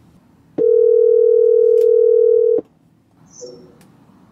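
Ringback tone of an outgoing phone call: one steady ring lasting about two seconds, heard while the call waits to be answered.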